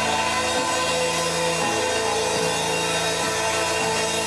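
Live rock band playing an instrumental passage: two electric guitars, electric bass and drum kit, with the bass line stepping between notes about once a second and no singing.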